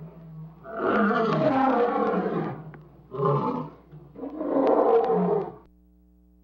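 A lion roaring three times: a long roar about a second in, a short one in the middle and a third that stops shortly before the end. A faint steady electrical hum runs underneath.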